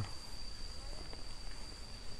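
An insect trilling on one steady, unbroken high-pitched note, faint under quiet outdoor background noise.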